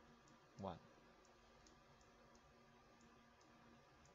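Near silence with a few faint, irregular light clicks from the pen input writing digital ink on screen.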